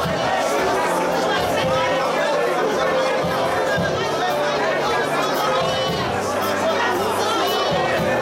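A congregation's voices raised together in worship, singing and praying aloud at once, over sustained low instrumental chords that change every couple of seconds.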